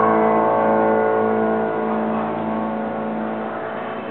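Piano chord left ringing on the sustain pedal, dying away slowly with no new notes struck.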